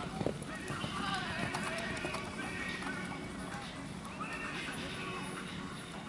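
Hoofbeats of a horse cantering on a sand arena, heard under steady background music and voices.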